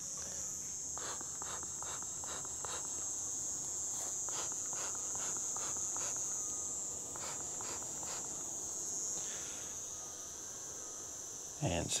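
Crickets chirring in a steady, high-pitched night chorus, with a scatter of faint short sounds over the first eight seconds or so.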